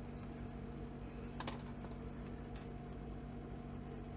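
A few faint, light clicks and taps from craft supplies being handled on a desk, the sharpest about a second and a half in, over a steady low hum.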